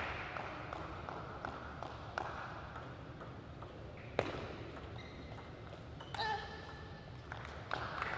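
Hall applause dying away over the first two seconds, then a few sharp clicks of a table tennis ball on bat and table, the loudest about four seconds in.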